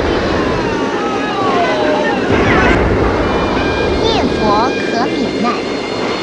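Storm at sea: a steady rush of heavy rain and waves, with frightened people crying out over it in wordless rising and falling cries.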